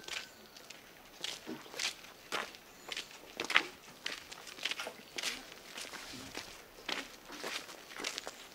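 Footsteps of people walking on a wet, gritty road, about two steps a second, slightly uneven.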